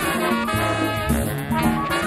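A college big band playing a jazz arrangement from a late-1970s recording, its horns over a bass line of held low notes.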